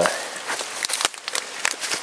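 Small woodland stream trickling over a sandy bottom, with irregular crunches and crackles of footsteps on wet fallen leaves and twigs.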